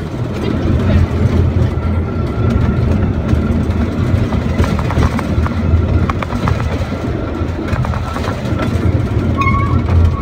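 A small passenger train running along its track, heard from inside the carriage: a steady low rumble with scattered clicks and clatter. A thin steady whine comes in about two seconds in and fades near the end.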